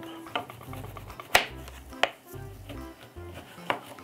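Kitchen knife slicing the ends off an orange on a plastic chopping mat: a few sharp knocks as the blade meets the mat, the loudest about a second and a half in, with background music underneath.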